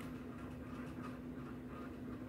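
Quiet room tone with one faint, steady hum that stops just after the end.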